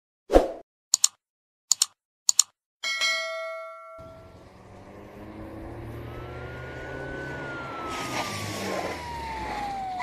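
Intro sound effects. A thump and a few sharp clicks are followed, about three seconds in, by a single bell-like ding that rings out. Then a low rumble builds, with a siren-like tone that slowly falls in pitch.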